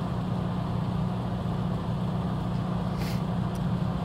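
Steady low hum of an idling diesel truck engine, with a brief soft hiss about three seconds in.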